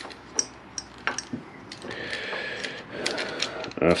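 Light clicks and knocks of a motorcycle clutch master cylinder and its clamp being fitted together by hand on the handlebar, sharpest in the first second or so.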